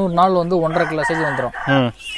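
A native country-chicken rooster crowing once, a rough call lasting about a second.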